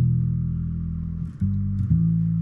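Electric bass played through a small combo amp: one low note rings for about a second and a half, then two new notes are plucked in quick succession.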